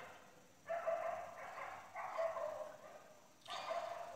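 A dog vocalising twice, about a second apart, each call drawn out at a steady high pitch.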